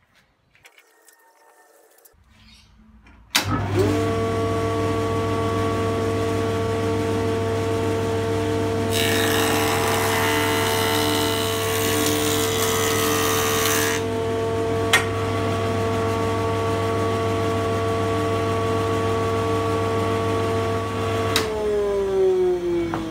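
Rebuilt 8-inch jointer with freshly set knives and new cutter-head bearings, switched on about three seconds in and coming up to a steady running whine over a low hum. Between about nine and fourteen seconds a board is fed over the cutter head, and the knives cutting the wood add a loud rushing noise. There is a single sharp click soon after, and near the end the motor is switched off, its pitch starting to fall as it runs down.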